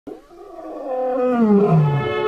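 Lion roar sound effect: one long roar that grows louder and drops in pitch as it goes.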